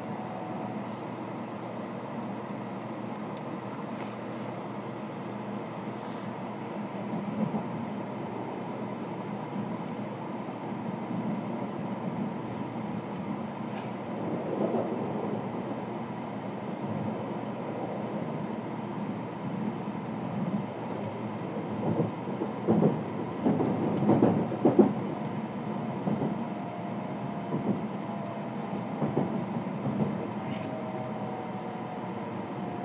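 Running sound of an N700-series Shinkansen heard inside a passenger car: a steady rumble and hiss, with a faint whine near the start and again near the end. A cluster of louder knocks comes about three quarters of the way through.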